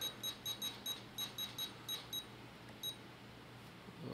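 Futaba 14SG radio transmitter beeping as its rotary dial is turned: about a dozen short, high beeps, several in quick succession over the first two seconds, then one more near the end. Each beep is a step of the second flap's trim value toward +100.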